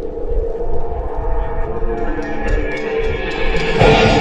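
Live rock band opening a song: a held chord rings steadily, then the full band with drums and electric guitars comes in loudly near the end.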